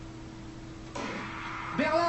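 The starting pistol fires for a sprint race about a second in, and the stadium crowd noise rises sharply behind it. It is heard through a television's speaker over a low steady hum. A commentator's voice comes in near the end.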